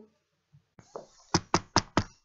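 Knocking on a hard surface: a couple of faint taps, then four quick, sharp knocks in a row, acting out a knock at a door.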